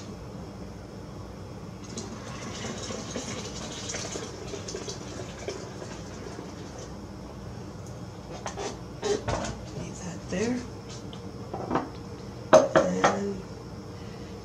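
Juice pouring into a container for a few seconds. Then come several sharp knocks and clinks of a plastic jug and dishes being handled and set down on a counter.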